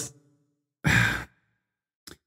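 A man's single short sigh, a breath out lasting under half a second, about a second in.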